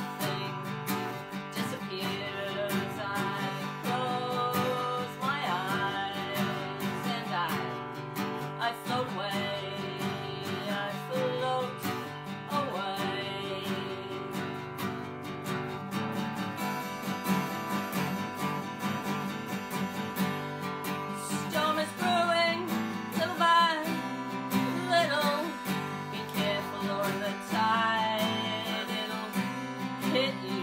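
A woman singing to her own strummed acoustic guitar. Midway there is a stretch of guitar alone before the singing comes back.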